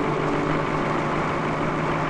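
Diesel engine of a heavy earthmoving machine, an elevating scraper, idling steadily with an even low hum. The engine has been left running while workers are at the machine.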